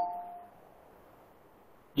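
A man's voice trails off in the first half second, leaving near silence on the video-call line.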